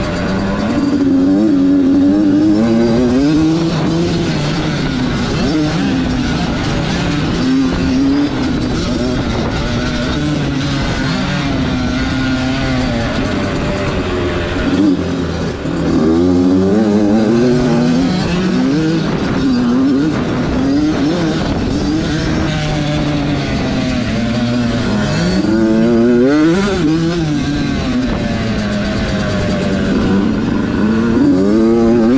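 Small youth motocross bike's engine, heard from a camera mounted on the bike, revving hard through the corners and straights of a dirt track. The engine note rises and falls over and over with throttle and gear changes and briefly drops off about halfway through, with other small dirt bikes riding close by.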